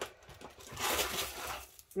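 Crinkling rustle of clear plastic packaging being handled, building up about half a second in and dying away near the end.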